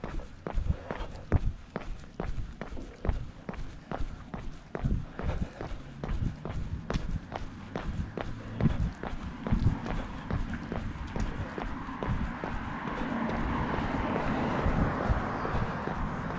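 A runner's footfalls on a concrete sidewalk, a steady beat of about three thuds a second picked up through a body-carried action camera. A rushing noise builds over the last few seconds.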